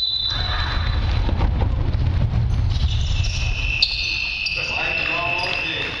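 Basketballs bouncing on a court, with voices in the background and a steady high-pitched tone through the second half.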